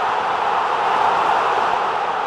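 A steady rushing noise with no pitch, laid over the club's closing logo card as an outro sound effect.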